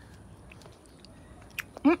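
A person chewing a Concord seedless grape: a few faint clicks over a quiet stretch, then speech begins near the end.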